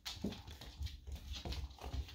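Two dogs playing on a hardwood floor, their claws clicking and paws scuffling in quick, irregular taps.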